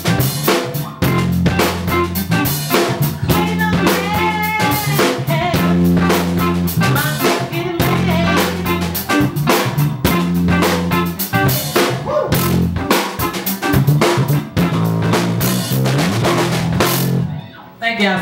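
A live blues band playing: a drum kit with snare and kick hits over a steady bass line and guitar. The band stops a little before the end.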